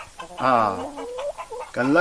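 Domestic chickens clucking, with a man speaking between the calls.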